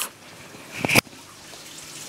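Water trickling and gurgling in a freshwater aquarium sump as it starts priming and its pipes fill, growing slightly louder toward the end. About a second in, a short sharp knock from the microphone being handled as it is taken off.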